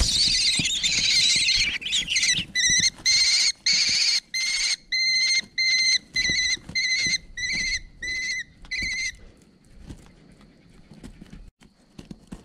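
Kestrel chicks begging shrilly as an adult lands in the nest box: a thump, a dense burst of screeching for about two seconds, then a run of repeated calls about twice a second. The calls stop about nine seconds in, leaving faint scratching of feet on the bark chips.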